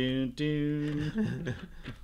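A man's voice holding two steady, drawn-out notes, the second slightly higher and longer, with a buzzy edge.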